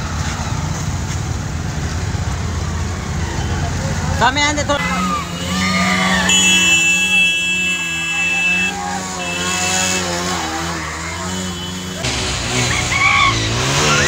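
Several motorcycle engines running at low speed together, a steady low drone, with voices shouting over them. A steady high-pitched tone sounds for about two seconds midway.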